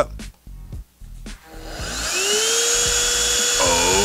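A HoLife cordless handheld vacuum switched on: about a second and a half in, its motor whines up in pitch and settles into a steady high whir.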